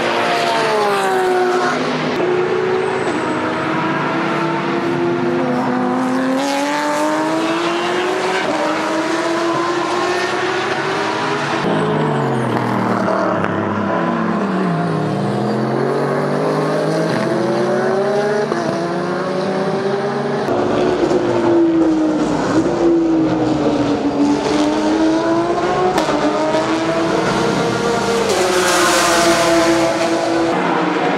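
Race car engines passing at speed, their pitch rising and falling with throttle and gear changes, with more than one car heard at once at times.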